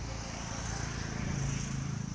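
A low engine hum that swells to its loudest about a second and a half in, then eases off, over a steady background hiss.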